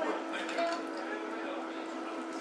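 Faint, indistinct voices at the table over a steady low electrical hum.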